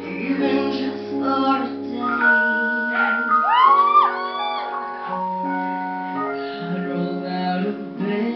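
Live pop ballad singing into a microphone over sustained keyboard chords, the voice sliding through a melismatic run about three to four seconds in.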